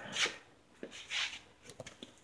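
Brief soft rustles, one near the start and one just after a second in, followed by a few light clicks near the end: handling noise from a moving camera.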